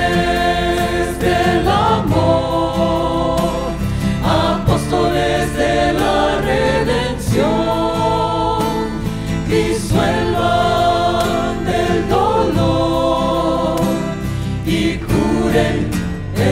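A small mixed choir of men and women sings a slow Christian devotional song into microphones, with acoustic guitar accompaniment, in long held phrases.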